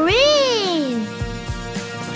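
A cartoon baby's drawn-out wordless "ooh", rising in pitch and then sliding down over about a second, over children's background music.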